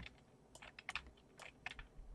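Faint typing on a computer keyboard: an irregular run of key clicks.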